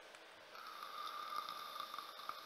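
A faint, steady breath drawn through the nose, with a slight whistle, starting about half a second in.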